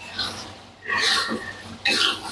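Thick green chili sambal sputtering and blurping in hot oil in a pan as it is stirred with a spoon, in about three short bursts.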